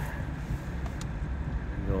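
BMW 325d's N57 straight-six diesel idling, a low steady rumble heard from inside the cabin. A single click about a second in comes from the iDrive controller as the screen switches to the map.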